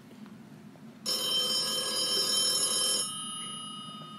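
A telephone ringing once. The ring starts about a second in, sounds for about two seconds, then fades away.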